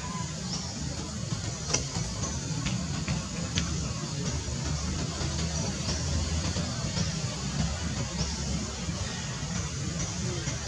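Outdoor background: a steady low rumble, with faint short high chirps now and then and a few light clicks in the first few seconds.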